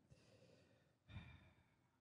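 Near silence: a person's faint breathing close to a microphone, a soft exhale followed by a brief faint sigh about a second in.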